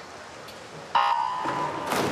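Swimming race start signal: a single steady electronic beep starts suddenly about a second in and lasts nearly a second. Just before the end, a broad wash of noise from the pool hall swells up.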